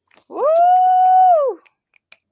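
A woman's long, high "woo!" cheer: one drawn-out call that swoops up, holds steady for about a second, then falls away.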